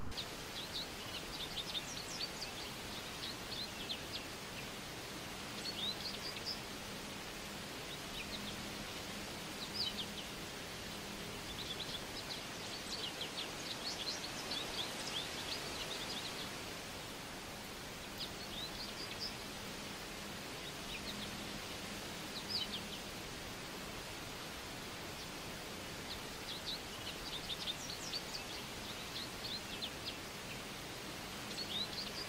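Small birds chirping in quick high bursts that come and go every few seconds, over a steady outdoor background hiss.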